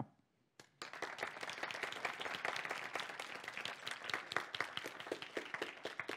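Audience applauding, starting about a second in and tapering off near the end.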